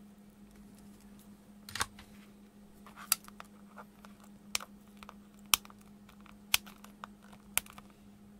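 Flush side cutters snipping the excess component leads off the back of a soldered circuit board: five sharp clicks about a second apart in the second half. They follow a brief knock and rustle as the board is handled, over a steady low hum.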